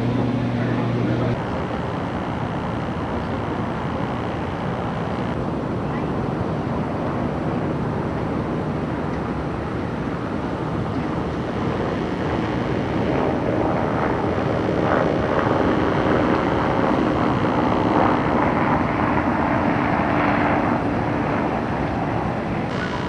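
Steady rushing roar of wind buffeting a camcorder microphone on an open-air skyscraper rooftop; it grows a little louder from about halfway through.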